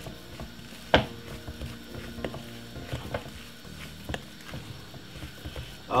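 Wooden spoon stirring a thick, wet blue draws batter in a glass mixing bowl, a soft squelching scrape. A sharp knock comes about a second in, and lighter taps follow as the spoon meets the bowl.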